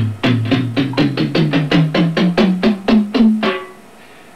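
Ensoniq SQ-2 synthesizer playing a home-made general MIDI drum-kit patch: one percussion sound struck key after key up the keyboard, about five notes a second, each a step higher in pitch. The run stops about three and a half seconds in.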